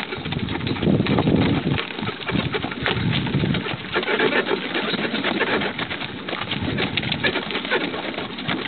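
A pair of carriage horses pulling a cart along a dirt road: a dense, continuous clatter of hooves, wheels crunching and harness rattling.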